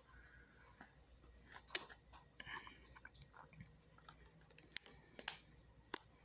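Faint handling noises: scattered small clicks and taps as hands stretch a rubber band around a stack of playing cards held in a thin 3D-printed plastic clip, with a few sharper ticks near the end.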